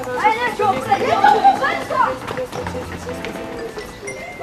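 Several children shouting and chattering excitedly for about two seconds over background music; after that only the music goes on.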